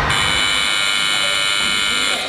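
Electronic competition buzzer at a weightlifting platform, one steady high-pitched tone held for about two seconds.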